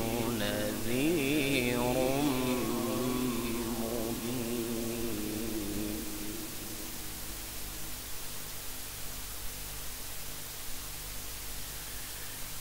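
A male qari's melodic Quran recitation through a microphone: one long, ornamented held note that wavers up and down in pitch and fades away about halfway through. After that only a steady low hum remains.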